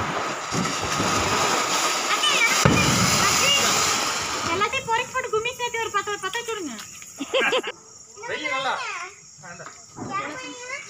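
A ground fountain firework (flower pot) spraying sparks with a loud, steady hiss that dies away about four and a half seconds in. High children's voices then call out over the quieter remainder.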